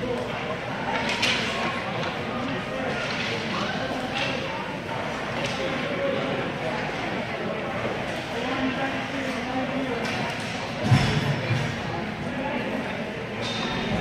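Echoing hubbub of an indoor ice rink: indistinct voices of children and coaches, with scattered sharp clacks of hockey sticks and pucks on the ice. A louder low thump comes about eleven seconds in.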